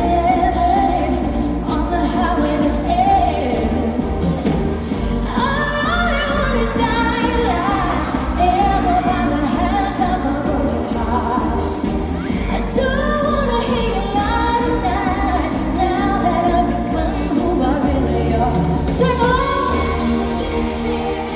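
Live pop song: a woman sings the lead vocal into a handheld microphone over a full band with keyboards, bass and drums, with hall reverberation.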